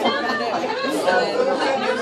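Several people talking at once in a room: overlapping chatter with no single voice standing out.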